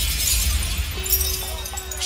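A glass-shatter crash effect over a deep sub-bass boom, played through the club sound system between tracks and fading out over the two seconds. A faint steady tone comes in about a second in.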